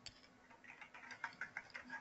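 Computer keyboard typing: one sharper keystroke at the start, then a quick run of faint key clicks as a short line of text is typed.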